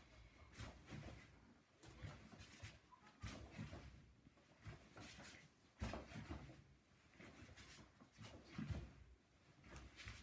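Faint movement sounds of a barefoot judoka doing rapid repeated entries against an elastic band: irregular soft thuds of feet turning on a wooden floor and rustles of clothing and band, with a slightly stronger thud about six seconds in.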